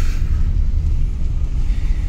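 Steady low rumble of engine and road noise heard inside the cabin of a Maruti Suzuki Alto 800 hatchback on the move.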